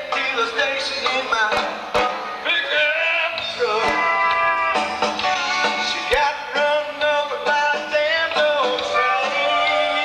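Live country band playing on stage, a lead melody gliding over guitars and drums, picked up from out in the crowd.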